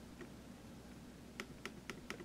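Quiet room with a low steady hum and a few faint, sharp clicks, about four of them, mostly in the second half, from a computer mouse being worked while a clip is dragged along an editing timeline.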